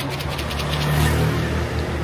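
A motor vehicle's engine running close by, a low rumble that grows louder around the middle.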